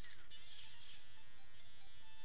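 Electronic video-game music with short beeps from a handheld game device's small speaker, thin and tinny with little bass.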